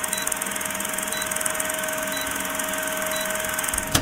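Film projector sound effect: a steady mechanical whirr and hiss with a rapid fine clatter and a steady hum, cutting off suddenly with a click at the end.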